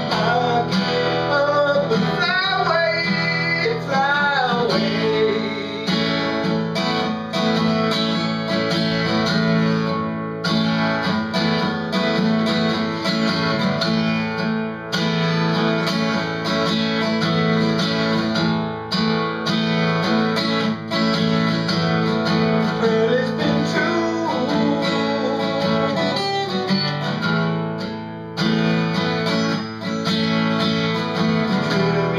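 Solo acoustic guitar playing a slow instrumental passage, with a wordless voice gliding up and down through the first few seconds.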